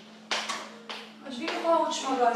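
Three quick, sharp impacts about a third of a second apart, then a person's voice near the end, which is the loudest part, all over a steady low hum.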